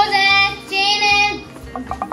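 A child's voice singing two long held notes over background music, followed near the end by a quick run of crinkles from a paper gift bag being rummaged.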